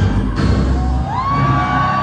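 Loud dance music over a reception hall's sound system with heavy bass, and a crowd cheering. About a second in the bass drops away and a long held note rises and carries on.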